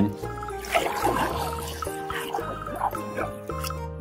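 Background music made of sustained tones and chords, with toy figures being swished through water in a plastic tub faintly under it.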